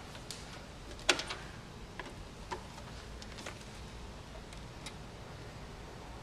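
A few sharp clicks and light knocks from a DVD player and its cable plugs being handled, the loudest about a second in.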